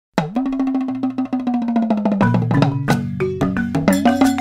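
Intro music: a fast, even run of percussive ticks over a held note, with a bass line and heavier drum hits coming in about two seconds in.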